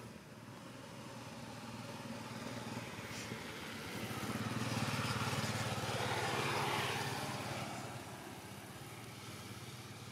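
A motor vehicle passing by: its engine and road noise swell over a few seconds, peak in the middle, then fade away.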